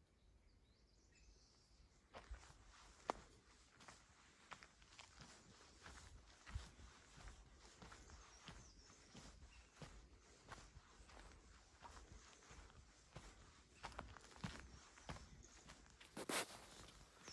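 Faint footsteps of a person walking on a paved lane strewn with dry leaves. They start about two seconds in and go on at an even walking pace.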